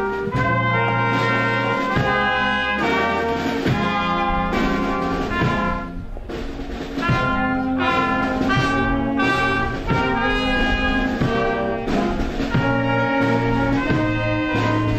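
Brass ensemble music with held chords that change every second or so.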